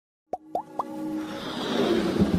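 Three quick rising plop sound effects about a quarter second apart, then a swelling music riser that builds toward the end. This is the soundtrack of an animated logo intro.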